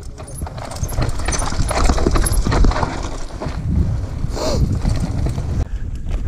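Mountain bike rolling fast down a rocky dirt trail, its tyres crunching over stones and roots and the bike rattling and knocking over the bumps.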